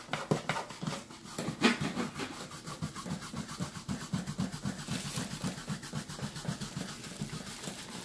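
The hand tool of a portable carpet-and-upholstery spot cleaner is scrubbed back and forth over cloth upholstery. It makes a quick, rhythmic rubbing of about four or five strokes a second.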